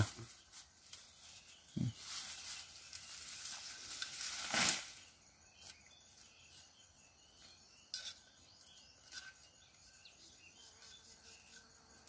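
Quiet forest ambience with rustling of leaves and brush: a soft knock about two seconds in, then a rustle that builds and peaks briefly at about four and a half seconds, followed by a few faint ticks.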